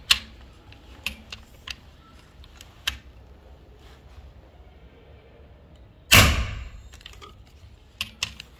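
FX Impact M3 PCP air rifle fired once about six seconds in: a single loud discharge that dies away within half a second. Before it come a few light mechanical clicks of the rifle being handled.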